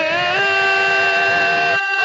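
Unaccompanied noha recitation: a single voice holds one long, steady sung note after a short rise in pitch at its start.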